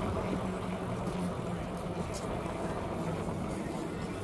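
Busy outdoor boardwalk ambience: indistinct voices of passers-by over a steady low hum.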